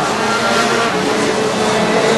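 Rotax Max Junior 125cc two-stroke kart engines running at racing speed, several engine notes overlapping in a steady high-pitched drone.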